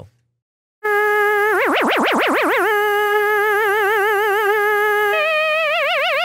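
Logic Pro Quick Sampler lead made from a looped recording of a man's voice imitating a trumpet, holding a note. The note starts plain, then about a second in the mod wheel brings in a wide pitch vibrato of about five wobbles a second, which eases to a lighter vibrato. About five seconds in it steps up to a higher note that keeps the vibrato.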